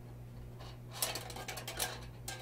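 Spindles of an ASI 9030 stainless steel dual-roll toilet tissue dispenser moved by hand in their slots, giving a quick run of small mechanical clicks and rattles from about halfway through.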